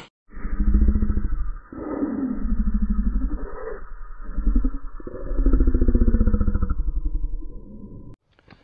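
A low, pulsing growl in three or four swells, cut in during editing as the voice of a large wasp in the grass that is 'growling at me'; it fades out near the end.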